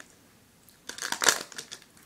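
Crinkly foil candy-bar wrapper being handled and peeled back, a burst of crackling lasting about a second that starts just under a second in.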